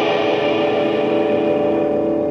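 Live rock band music: a full chord struck once just before and left ringing, sustained and slowly fading with echo.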